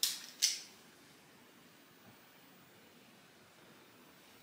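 Two brief soft rustles of small makeup items being handled, about half a second apart near the start. Faint room tone follows.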